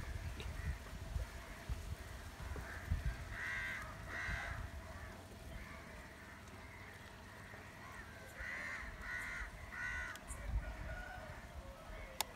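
A bird calling in the background, with two short calls about four seconds in and a run of four quick calls near the end. Faint low knocks come from hands working a plastic cup.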